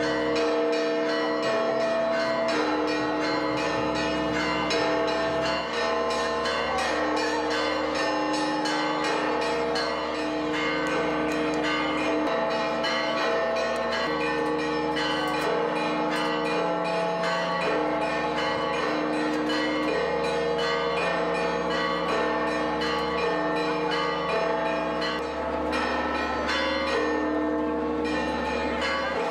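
Church bells pealing in fast, dense strikes, with ringing tones that change every second or two throughout.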